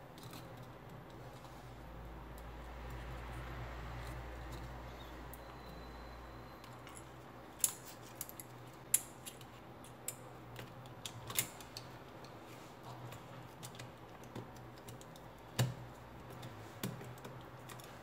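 Light clicks and taps of tablet parts being handled: the mainboard and plastic frame knocking and pressing together on a silicone work mat. The clicks come scattered and irregular from about halfway through, a handful of them sharper than the rest.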